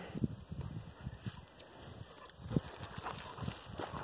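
Faint, irregular footsteps and scuffs on a dirt path.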